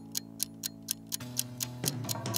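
Quiz countdown-timer ticking, about four ticks a second, over a soft held synth chord of background music that changes a little past one second in.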